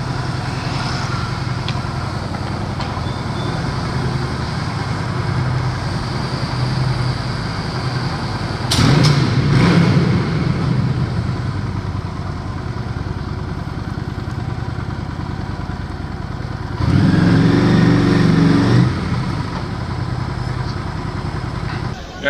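Honda Shadow 750 motorcycle's V-twin engine running at low speed in an underground car park. Its sound swells louder twice, about nine seconds in and again about seventeen seconds in.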